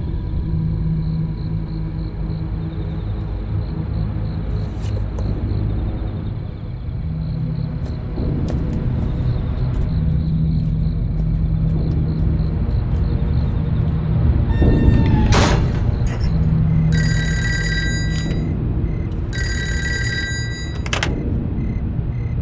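Film soundtrack with a low, sustained droning score. About fifteen seconds in comes a sharp, loud hit, and it is followed by two bursts of high, bell-like ringing, each about a second and a half long.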